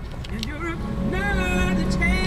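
A voice with drawn-out, gliding pitch over the steady low rumble of a car in traffic, heard from inside the cabin.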